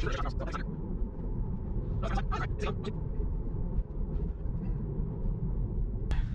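Steady low road and tyre rumble inside the cabin of a Tesla electric car on the move, with a few short, faint sharp sounds about two seconds in.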